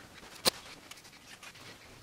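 Clothes being lifted and shifted on a bed: faint fabric rustling, with one sharp click about half a second in.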